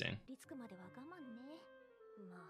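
Quiet anime dialogue, a character's voice speaking over soft background music, low in the mix.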